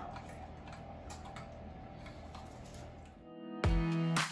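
A spoon faintly clicking against a glass measuring cup while stirring a batter, over a low steady hum. About three and a half seconds in, electronic music with a heavy beat cuts in loudly.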